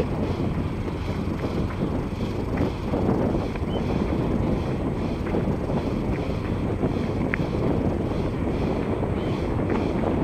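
Wind buffeting the microphone, a steady low rumble with no clear pitch.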